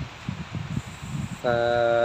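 Low, uneven rumble of wind gusting on the microphone, then a man's voice holding a drawn-out word near the end.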